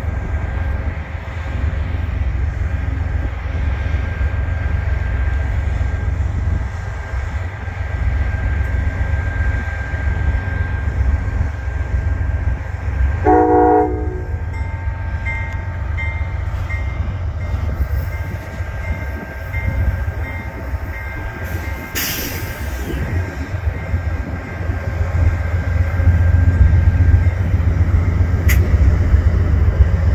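Two Amtrak GE P42 diesel locomotives running as the train passes: a steady low engine drone with wheel and rail noise, growing louder near the end as the locomotives come close. A short horn blast sounds about halfway through, and a single sharp bang comes about two-thirds of the way in.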